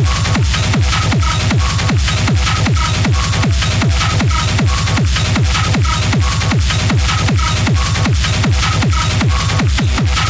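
Hard techno (schranz) in a DJ mix: a fast, steady kick drum at about two and a half beats a second, each kick falling in pitch, with a short higher synth note repeating over it.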